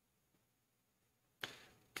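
Near silence, then about one and a half seconds in a single sharp clack of a Go stone being placed: the online Go client's move sound for the opponent's stone, fading briefly.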